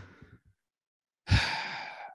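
A man's long sigh-like exhale blown close into a microphone, starting suddenly about a second in and trailing off, after the breathy tail of laughter fades.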